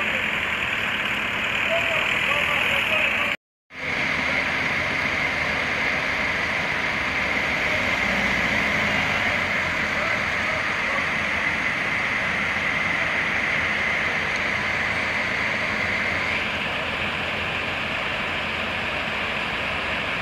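Heavy mobile crane truck's diesel engine running steadily under load, with a steady high whine over the engine noise. The sound drops out completely for a moment about three and a half seconds in.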